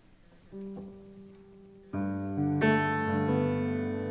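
Solo piano played at the opening of a piece: a soft held note about half a second in, then full sustained chords in the low and middle register entering about two seconds in and swelling a little louder.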